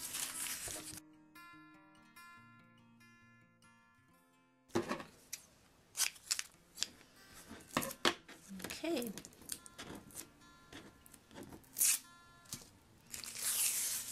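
A paper napkin strip backed with clear tape crinkling as it is handled. Then about three seconds of acoustic guitar background music alone. Handling noise returns suddenly: crinkling and a scattering of sharp clicks and taps, with the guitar faintly underneath.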